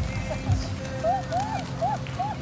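A large flock of feral pigeons flapping and taking off, with a couple of low wing thumps near the start. From about a second in there is a quick run of short rising-and-falling chirps, about three or four a second.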